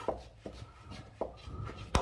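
A few short, sharp clicks and taps of hand tools and metal pipe fittings as the last pipes are worked off a VW T4's automatic gearbox. The loudest click comes near the end.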